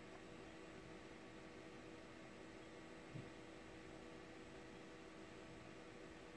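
Near silence: faint steady hum and hiss of the recording's background, with one small low bump about halfway through.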